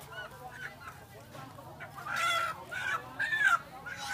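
Live chickens squawking: two loud calls, the first about halfway through and the second just past three seconds.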